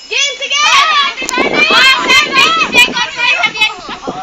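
A group of young people shouting and squealing excitedly over one another, high-pitched and loud, close to the microphone; the outburst swells about half a second in and eases near the end.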